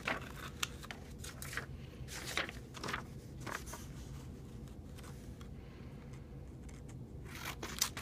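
Small scissors snipping through drawing paper: a run of short, irregular snips, most of them in the first four seconds, then fewer and quieter ones.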